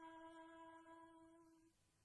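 A woman's voice holding one long, faint sung note that fades out about one and a half seconds in, at the end of a line of a devotional song.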